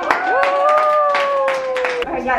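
A small group clapping while a woman holds one long, high cheer that sags slightly in pitch.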